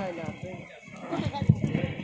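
A brief pause in a man's speech through a microphone, filled with faint background voices and a few light, irregular knocks in the second half.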